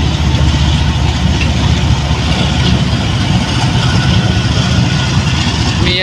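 Diesel locomotive engine running with a steady, deep rumble as it slowly hauls a goods train of hopper wagons past at close range.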